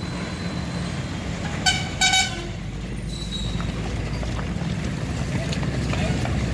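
Street traffic noise with two short toots of a vehicle horn, about two seconds in.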